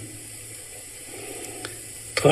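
Low, steady hiss with a faint low hum, the background noise of a voice recording, and a single faint click about one and a half seconds in.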